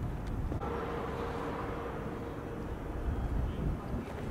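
Steady outdoor background noise, mostly a low rumble, with a faint steady hum from about half a second in until about three seconds.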